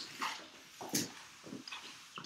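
Whiteboard eraser wiped across a whiteboard in a string of short, irregular rubbing strokes, about five in two seconds.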